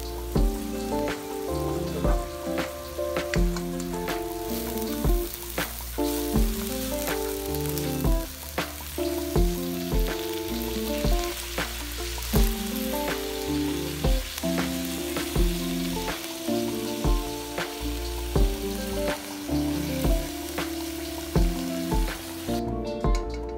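Ground meat, cabbage and carrots sizzling as they stir-fry in a hot pan, stirred with a spatula. Background music with a steady beat plays throughout.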